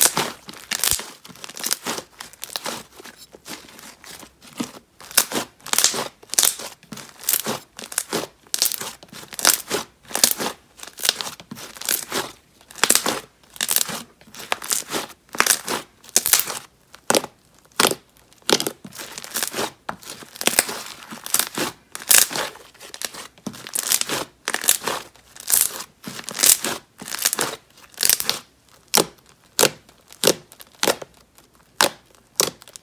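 Thick white slime squished, squeezed and poked by hand, giving a steady run of short, sharp sounds about twice a second.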